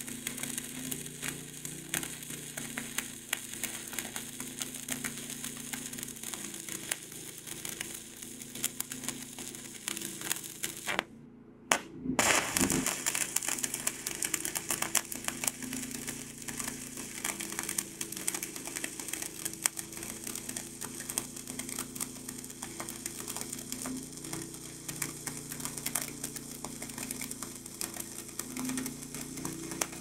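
Shielded metal arc (stick) welding arc burning on steel plate: a continuous dense crackle and spatter. The arc stops briefly about eleven seconds in, then starts again a little louder.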